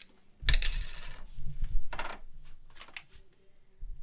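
Fired brass rifle cartridge cases clinking and rattling against one another as cases are picked by hand from a plastic bin: a series of light metallic clicks, loudest about two seconds in.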